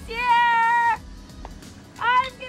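A woman's voice calling out in one long, high, held shout that slides up and then holds steady for about a second, then stops.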